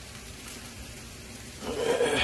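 Potato-vegetable pancakes sizzling in oil in a frying pan, a steady sizzle that swells into a louder burst of noise near the end.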